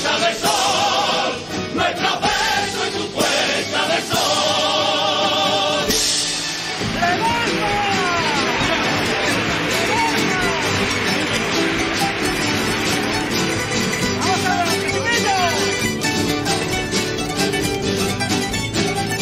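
A Cádiz carnival coro sings held, wavering notes, accompanied by its plucked-string band of guitars, bandurrias and lutes. About six seconds in, the singing ends and a burst of crowd noise with shouts follows, while the plucked strings keep playing.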